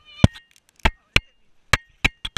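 Feet landing on a trampoline mat close by: four sharp thumps at uneven intervals from people jumping.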